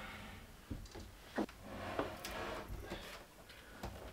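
A few soft knocks and scuffs as a heavy metal battery cabinet is rocked and shifted by hand on a plywood floor.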